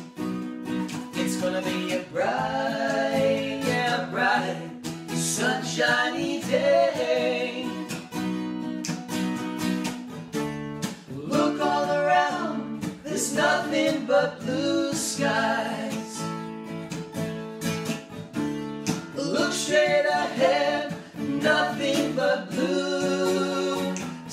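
Two men singing together over a strummed acoustic guitar.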